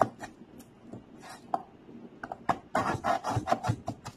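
Kitchen knife slicing through a beetroot onto a cutting board: a short run of quick cutting strokes about a second in, then a denser run of strokes in the second half.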